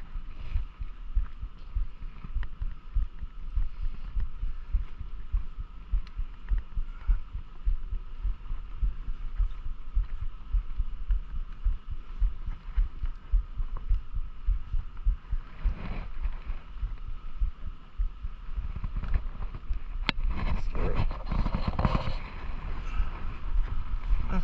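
Irregular low thumping and rumble on a body-worn camera's microphone, many soft thuds a second, with louder rustling handling noise from a few seconds before the end.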